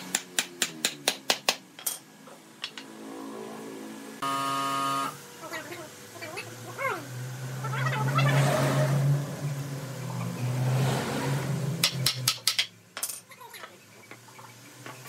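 A quick run of about eight sharp knocks as a wooden cradle upright is driven down into the mortise in its foot, with a few more knocks near the end as the crossbar is fitted. In between, a short steady beep-like tone and then a louder stretch of background voices and a low engine-like hum.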